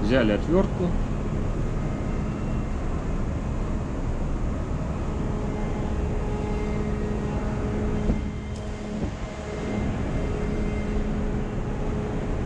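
Steady drone of a ship's engine-room machinery: a constant low hum with several steady higher tones over it. It dips briefly a little past three quarters of the way through.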